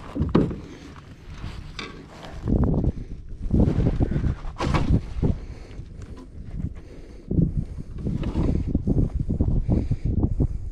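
Wind buffeting a chest-mounted action camera's microphone in uneven gusts, mixed with knocks, rustles and a sharp snap from handling a bass and landing net while unhooking it in a plastic kayak.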